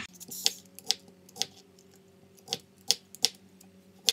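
Swivel vegetable peeler stripping the skin off a potato in quick strokes, heard as about seven short, sharp, irregularly spaced clicks and scrapes.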